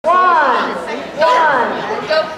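Two high-pitched, drawn-out calls from a woman's voice, one at the start and another just over a second later, each falling in pitch. They are wordless cues from a handler to a dog, ringing in a large hall.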